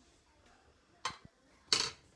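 Two short clatters of cookware being handled on a gas hob, a small one about a second in and a louder one near the end.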